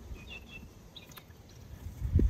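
Quiet outdoor background with a few faint, short high chirps near the start and a single light click a little after a second in.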